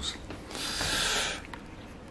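Cling film over the foam-filled guitar case rustling under a gloved hand: a single hissing rustle that starts about half a second in and lasts about a second, with a few faint clicks after it.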